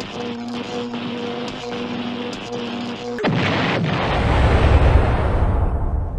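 A pulsing electronic hum with light clicks, cut off about three seconds in by a loud explosion sound effect whose deep rumble swells and then slowly dies away.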